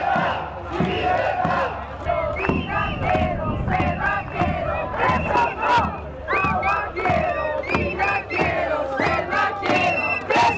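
A crowd of protesters shouting, many raised voices overlapping, with sharp clicks scattered through.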